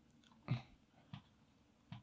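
Faint mouth noises close to a microphone: a few short smacks, the loudest about half a second in, against a quiet room.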